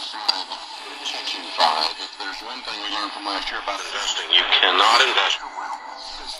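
AM talk broadcast from 620 kHz, WTMJ Milwaukee, played through the small speaker of a Horologe HXT-201 pocket radio: thin, with no bass, over a light hiss. The signal is fading.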